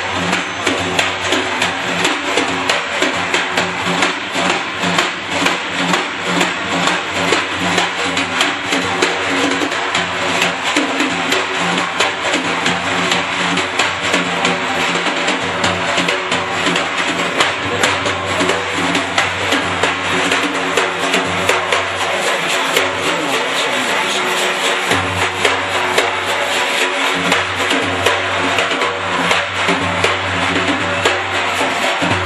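Daf, the large Persian frame drum, played solo: rapid, continuous strokes on the skin head mixed with deep bass strokes, while the metal ringlets inside the frame jingle throughout.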